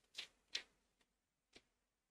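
Near silence broken by a few faint, short clicks: two close together near the start and one more about a second and a half in.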